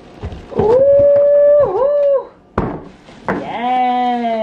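A woman's long, drawn-out wordless exclamation, high and held with a brief wobble in the middle, then a lower 'ohh' that falls in pitch near the end. There is a single thump between the two.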